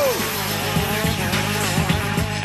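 Racing go-kart engines running hard off the start line, mixed with background music.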